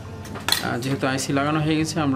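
Nokia phone motherboards clinking against each other and the bench as they are picked up and handled, a few sharp light metallic clicks.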